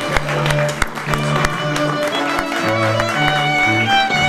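Music with bowed strings playing held, stepping notes, with scattered clapping that thins out after the first second or two.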